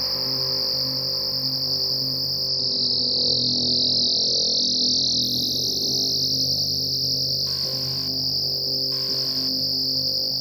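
Electronic computer music: a shrill, steady high tone that wavers and thickens in the middle, over a bed of low sustained tones, with two short patches of hiss in the second half.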